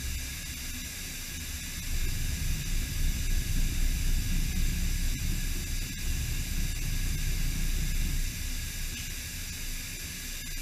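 DMG Mori DMU 65 monoBLOCK five-axis machining centre running with the tool clear of the aluminium workpiece: a steady hiss with faint high tones over an uneven low rumble, with no cutting heard.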